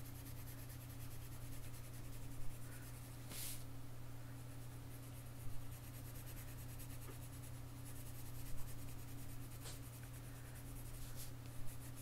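Watercolour pencil scratching and rubbing faintly on paper as lily petals are shaded, with a few brief louder strokes. A steady low hum runs underneath.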